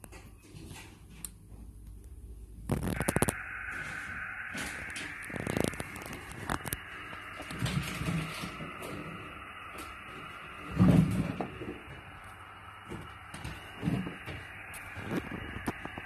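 Xiegu X6100 HF transceiver's speaker hissing with receiver band noise, cut off sharply above about 3 kHz, starting after a few clicks about three seconds in. The radio is handled throughout, with knocks and bumps against its case.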